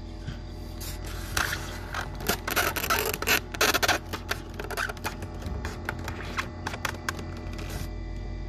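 Newly hatched quail chicks scrabbling and pecking on the incubator's wire-mesh floor and eggshells: a run of quick scratches and taps, busiest about three to four seconds in, over a steady low hum.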